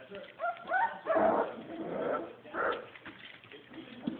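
Young Border collie puppies, just under four weeks old, whining and yipping as they play, with a couple of short rising squeaky cries about half a second in and louder bursts after.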